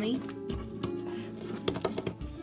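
Background music with several sharp plastic clicks and taps: a fashion doll's plastic roller skates and limbs knocking on a wooden tabletop as it is moved by hand, with a cluster of clicks near the end.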